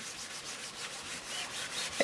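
A folded paper towel rubbed quickly back and forth over a work surface, wiping up leftover wet paint.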